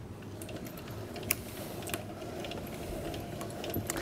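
Hand-cranked pasta machine being turned, its gears and rollers giving a quiet, irregular clicking as a sheet of egg pasta dough is rolled thinner at setting four. One sharper click comes about a third of the way in.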